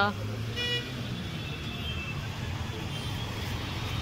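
Steady low rumble of street traffic with faint background voices, and a brief faint horn-like tone near the start.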